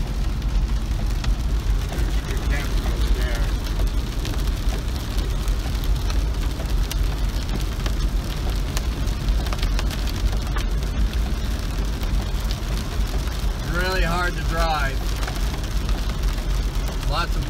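Heavy rain on a car's roof and windshield, heard from inside the cabin, over the steady low rumble of the car driving on a wet road.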